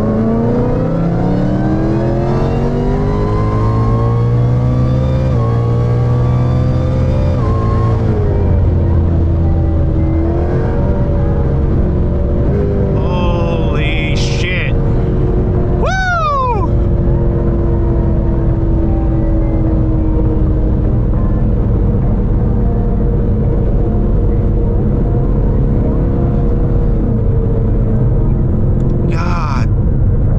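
Roush-supercharged Mustang V8 under wide-open throttle on a pull, pitch climbing steeply through the gears with an upshift about eight seconds in. About halfway the throttle closes with a sharp falling whine, and the engine drones steadily at lower revs as the car slows and the automatic keeps upshifting.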